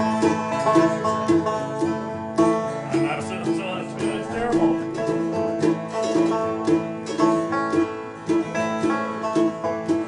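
Banjo being tuned: one string picked over and over, about two notes a second, while other strings ring on.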